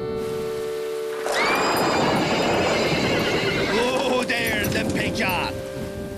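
A horse whinnying: one long, wavering call that falls in pitch, starting about a second and a half in, followed by shorter calls, over background music.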